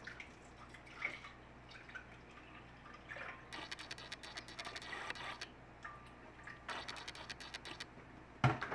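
Milk poured from a plastic jug into a glass blender jar, splashing in two spells, one in the middle and a shorter one near the end. A light knock about a second in.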